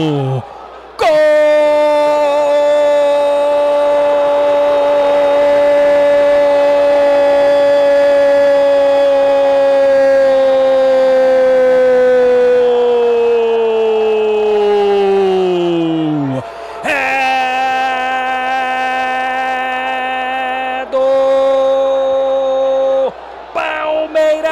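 Brazilian radio football commentator's drawn-out goal shout, "gooool". One long held note lasting about fifteen seconds, its pitch sagging as his breath runs out, then a second held shout of about six seconds.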